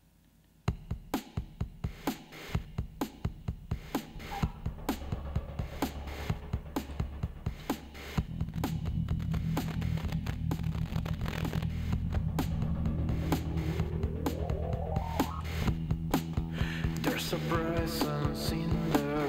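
Electric bass guitar played live through a gesture-controlled effects and looping processor. A steady rhythm of sharp percussive clicks starts about a second in, and sustained low bass notes join about eight seconds in. Near the end a tone sweeps upward.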